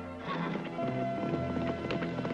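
Quick horse hoofbeats at a gallop, a cartoon sound effect, over orchestral background music.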